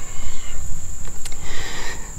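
Insects droning steadily at one high pitch, over a low rumble on the microphone.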